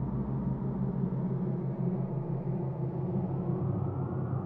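Electronic brainwave-entrainment drone of low, steady tones pulsing rapidly and evenly, a 6 Hz theta-rate beat meant for listening. A fainter higher tone slowly rises near the end.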